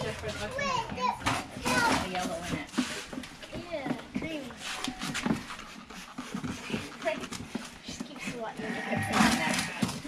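Indistinct talking voices, a child's among them.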